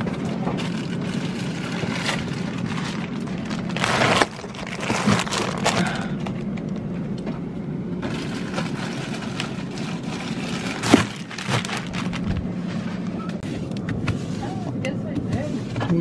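Plastic-wrapped packs of ice blocks being handled and stacked onto a freezer shelf: crinkling and soft knocks, sharpest about four and eleven seconds in, over a steady low hum.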